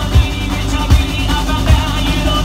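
Live rock band playing, with a kick-drum beat about every three-quarters of a second under the guitars and vocals.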